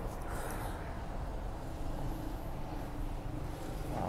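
Steady low rumble of street traffic, with a faint engine hum in the middle of it.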